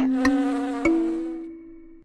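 Buzzy electronic tone from a logo jingle, held and stepping up in pitch twice before fading out.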